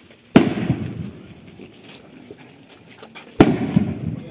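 Two firework bangs about three seconds apart, one just after the start and one near the end, each trailing off in a short rolling echo.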